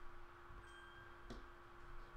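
Near silence: quiet room tone with a faint steady hum and a single soft click a little past the middle.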